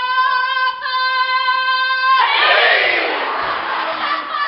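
A single high female voice holds one long sung note, then about two seconds in it gives way to many voices shouting together loudly, the massed shout of a kapa haka group.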